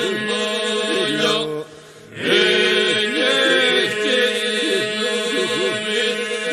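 Labërian polyphonic folk singing: ornamented, wavering vocal lines over a held drone. There is a short break about two seconds in.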